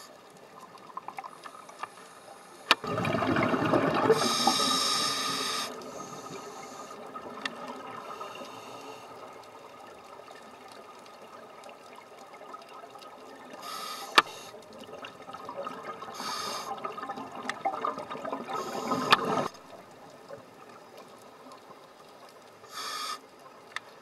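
Scuba regulator breathing heard underwater: two long stretches of gurgling exhaled bubbles, one starting about three seconds in and one from about fourteen to nineteen seconds, with short hisses among them.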